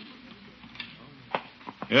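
A few faint clicks and knocks of someone rummaging about, a radio sound effect, with a man's voice starting at the very end.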